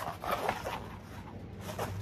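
A rolled canvas print rustling as it is unrolled and held open by hand, busiest in the first half-second or so and quieter after.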